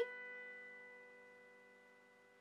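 A soft piano chord held on the keys, its steady notes slowly dying away with no new note struck.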